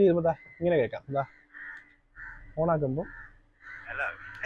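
Crows cawing a few times, with harsh calls that fall in pitch.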